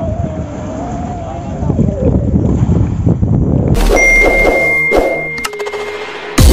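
Engine of a wooden outrigger fishing boat running steadily with a low rumble. About four seconds in, it cuts to a sustained ding chime and a few clicks of an animated sound effect.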